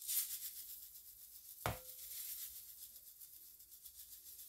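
Panko breadcrumbs pouring from a canister into a glass bowl, a steady faint hiss of dry crumbs, with a single click about one and a half seconds in.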